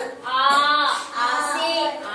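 A woman reciting in a drawn-out, sing-song voice: two long held syllables, as in chanting letter sounds for young children.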